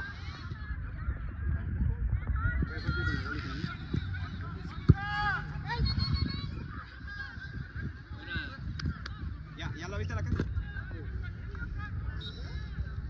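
Soccer ball kicked once with a sharp thump about five seconds in, over a constant low rumble of wind on the phone microphone. Short, high, arching calls come and go throughout; they could be players shouting or geese honking.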